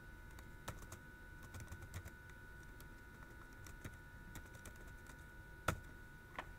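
Computer keyboard being typed on: faint, irregular keystrokes, with one louder click near the end, over a faint steady whine.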